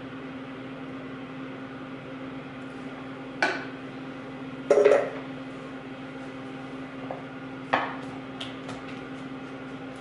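A few separate knocks and clatters of kitchen utensils and dishes being handled on a countertop, the loudest about five seconds in, with faint ticks near the end. A steady low hum runs underneath.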